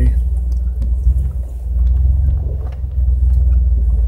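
Jeep Wrangler engine running at crawling speed on a rough trail, a steady low rumble heard from inside the cab.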